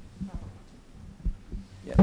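Handling noise from a handheld microphone as it is passed from one person to another: scattered low thumps and bumps on the mic, with faint speech under them.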